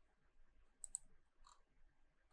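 Near silence: room tone with a few faint, short clicks, a close pair about a second in and fainter ones after.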